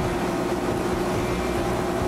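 Tow boat's engine running steadily at speed, a constant hum over the rush of water and wind, heard from aboard the boat.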